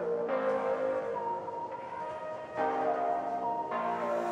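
Background music: held, bell-like chords that change about once a second.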